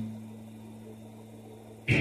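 A low held note fades to a faint hum, then an electric guitar comes in loudly with a strum near the end.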